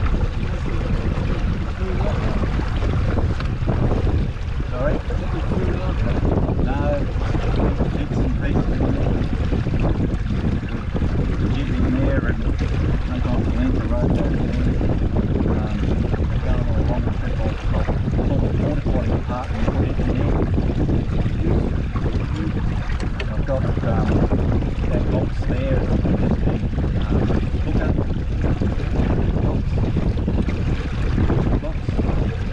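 Steady wind buffeting the microphone, with water rushing and sloshing along the hull of a Scruffie 16 wooden sailing dinghy under sail in choppy water.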